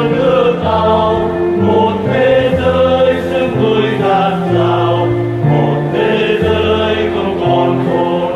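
Church choir singing a hymn, with held low notes beneath the voices changing about once a second.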